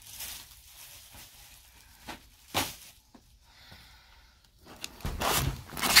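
Clear plastic planner cover being handled and slid over a notebook, rustling softly, with a sharp crackle about two and a half seconds in and louder rustling in the last second.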